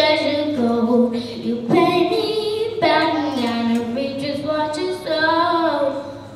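A young girl singing through a microphone and PA, in several long held phrases that slide between notes, with short breaths between them; the voice stops at the end.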